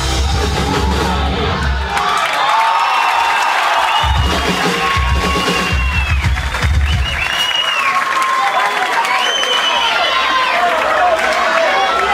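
A live rock band plays the closing hits of a song, falling away after about two seconds and returning for a last burst until about seven seconds in. A crowd cheers and shouts over and after it.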